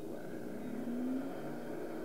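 Car engine revving in a movie trailer's soundtrack, heard through a television speaker, its note swelling and rising slightly near the middle.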